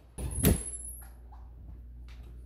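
A door being pushed open: a sudden clatter about half a second in with a brief high squeak, followed by a steady low hum.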